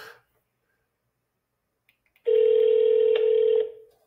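Ringback tone of an outgoing phone call heard through a smartphone's speakerphone: one steady ring starting a little past halfway and lasting about a second and a half, fading out near the end.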